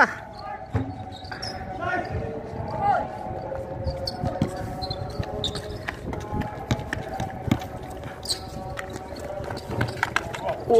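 Basketball bouncing on a concrete outdoor court, a few sharp thumps scattered through, with players' voices calling out in the background.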